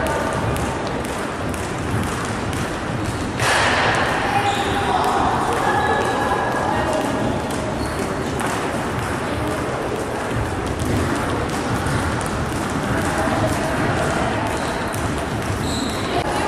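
Skipping ropes slapping a wooden floor and feet landing in quick, uneven clicks and thuds from several people jumping at once, with voices chattering in the background.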